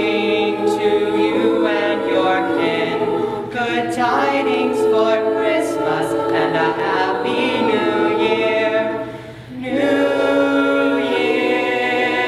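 Mixed high-school choir singing held chords in several parts, with a short break for breath about nine and a half seconds in before the voices come back in together.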